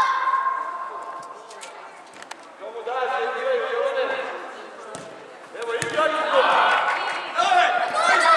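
High-pitched shouts from players and spectators in an echoing indoor sports hall, with several sharp thuds of a futsal ball being kicked.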